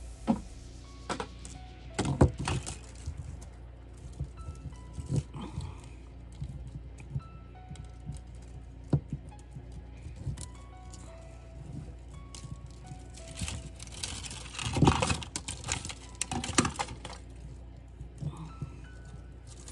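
Soft background music under light clicks and rattles of thin wire and plastic tubing being handled as the wire is fed through the tube, with a busier spell of rattling near the end.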